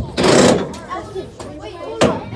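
Indistinct voices talking, with a loud, brief burst of noise close to the microphone about a quarter of a second in.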